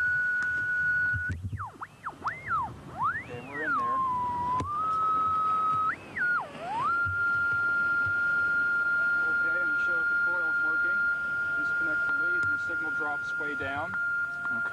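A steady whistle-like tone from a shortwave receiver picking up the test signal broadcast from the lab through the ground, with the ocean as antenna. About a second in, the pitch swoops up and down several times as the receiver is tuned, then settles back to a steady tone a little lower than before.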